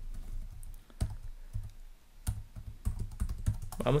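Typing on a computer keyboard: a run of uneven key clicks as a web address is typed in.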